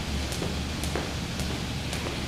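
Jump rope skipping, with sharp ticks about twice a second as the rope strikes the floor, over a steady low hum.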